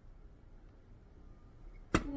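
Faint room tone, ending in a single sharp click just before the end.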